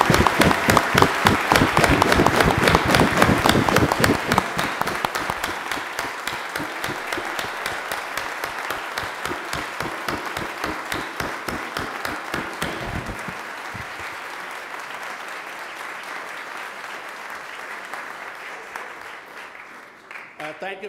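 A large audience applauding: dense clapping, loudest for the first few seconds, then gradually dying away.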